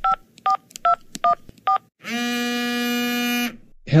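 Phone keypad dialing: five short touch-tone (DTMF) beeps about half a second apart, then one long, buzzy ringing tone on the line lasting about a second and a half.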